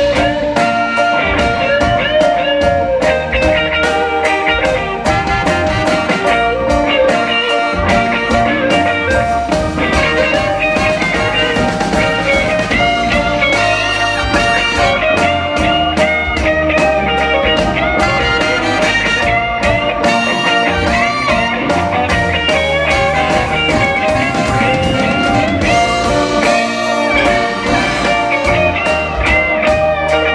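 Live blues band playing an instrumental passage with no singing: electric guitar lines with bent notes over bass, a steady drum beat and keyboard.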